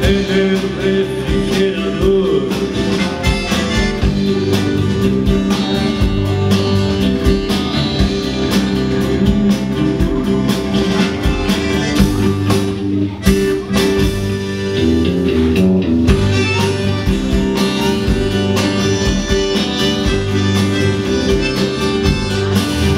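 Live band playing a song on electric bass, electric guitar, acoustic guitar and drum kit, with a steady bass line and regular drum hits. A short run of low notes comes about two-thirds of the way through.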